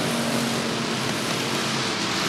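A pack of Roadrunner-class stock cars racing together on a short oval, their engines merging into one steady drone under power.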